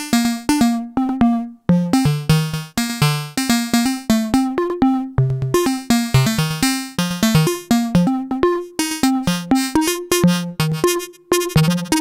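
Moog Labyrinth analog synthesizer playing a fast repeating generative sequence of short, bright, quickly decaying notes, about four or five a second. The tone shifts as an LFO sweeps the blend between the wavefolder and the filter cutoff.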